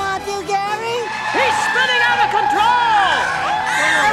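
Cartoon voices screaming in alarm. At first a few voices, then from about a second in a whole crowd screaming together, their pitches rising and falling over one another.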